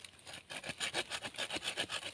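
Hand pruning saw cutting through wood at the base of a tree in the soil. After a pause it saws in quick, even strokes, about six or seven a second, starting about half a second in.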